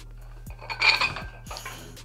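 Plate-loaded metal dumbbells clinking as they are curled, the loudest clink about a second in.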